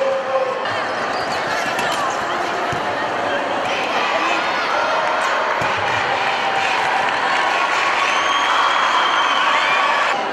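Wheelchair basketball game: a crowd of spectators shouting and cheering without a break, the noise building toward the end, with a ball bouncing on the court a couple of times.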